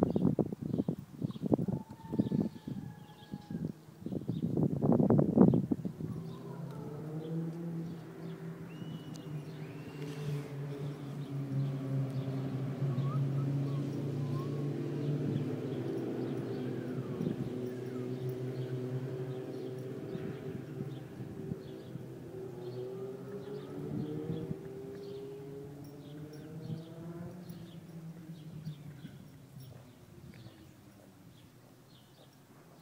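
Loud irregular rustling and knocks for the first few seconds, then a low engine drone that swells and fades away over about twenty seconds, with faint bird chirps.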